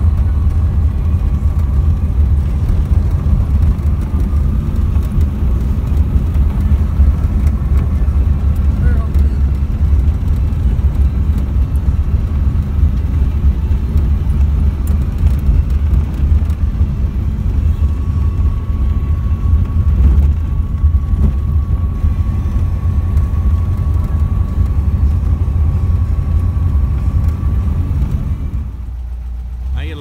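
An air-cooled car's engine and road noise heard from inside the cabin, a steady low rumble while cruising, easing off shortly before the end.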